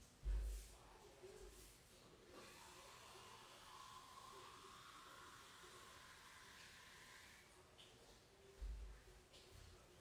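Faint water running from a tap into a container for about five seconds, starting a couple of seconds in, with a low thump near the start and another near the end.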